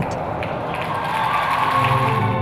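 An arena crowd applauding and cheering. Music begins near the end.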